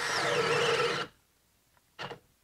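DeWalt 12 V cordless drill on a 3 Ah battery boring a one-inch spade bit into a wooden board. The motor whine falls in pitch as it bogs under the load, and the drill stops suddenly about a second in. The tool is having trouble with the cut.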